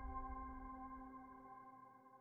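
The ringing tail of a musical chime, several steady tones together slowly dying away to almost nothing.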